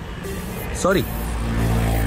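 A motor vehicle passing close by, its low engine rumble swelling in the second half, over background music.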